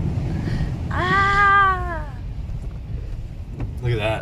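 Car driving through deep standing floodwater on the road, water spraying up against the windshield over a steady low rush of tyres and water. A person's single drawn-out exclamation rises and falls about a second in.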